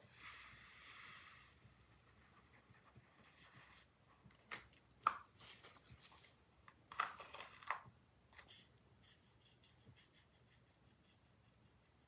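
Fine glass glitter pouring off a folded sheet of paper into its jar, a faint hiss for about the first second and a half, then scattered light clicks and scrapes as a stick scoops through the glitter in the jar.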